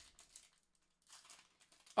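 Foil wrapper of a Pokémon Aquapolis booster pack crinkling faintly as it is peeled open by hand, in two short spells of rustling.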